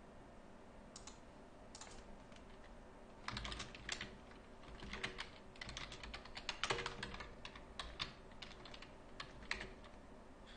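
Typing on a computer keyboard: a couple of single keystrokes, then a quick run of keystrokes lasting about six seconds from around three seconds in.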